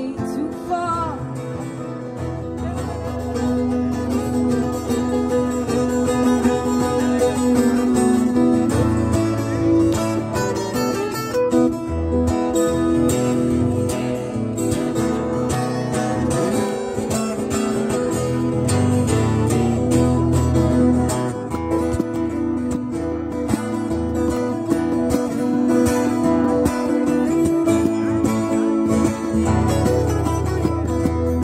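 Live acoustic guitar music with singing.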